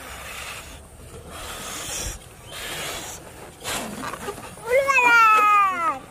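Breaths blown into rubber balloons to inflate them, then a loud squeal lasting about a second near the end, wavering in pitch, as air is let out through a balloon's stretched neck.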